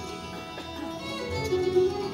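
Bluegrass string band playing live, with fiddle, acoustic guitar, mandolin and upright bass; the ensemble grows fuller and louder about halfway through.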